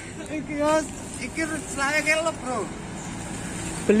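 A man talking in short phrases over a steady background of road traffic.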